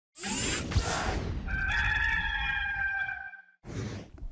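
A whoosh with a sharp hit about three-quarters of a second in, then a rooster crowing: one long held call that stops shortly before the end.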